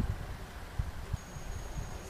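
Wind buffeting the microphone in irregular low gusts, with a faint, thin, steady high tone starting about a second in.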